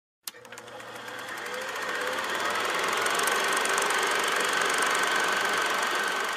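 Film projector running: a fast, even mechanical clatter that starts with a click and swells over the first two seconds, then holds steady.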